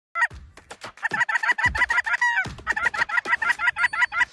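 A rapid run of short, clucking goose calls, about seven a second, with a brief pause about halfway through.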